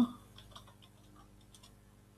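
Faint computer keyboard key clicks: a few scattered keystrokes as a short command is typed and entered.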